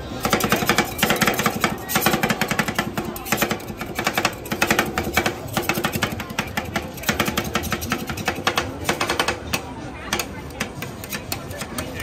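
Two metal spatulas rapidly chopping and tapping ice cream on the frozen steel plate of a rolled ice cream machine: a fast clatter of metal on metal, many strikes a second, easing off near the end.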